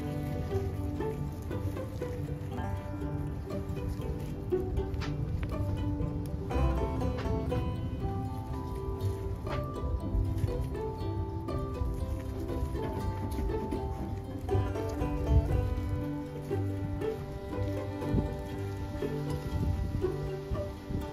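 Background instrumental music with plucked-string notes over a steady low beat.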